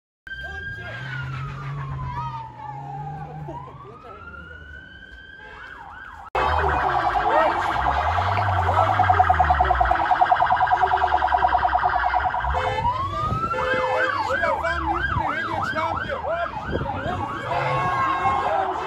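Garda vehicle siren: a slow wail that falls and rises again, then a loud steady high tone, and from about two-thirds of the way through a fast yelp swinging up and down about two or three times a second.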